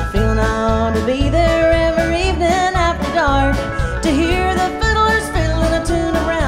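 Live country band playing a song: a woman's lead vocal over fiddles, electric guitar, pedal steel, bass and drums, with a steady low beat.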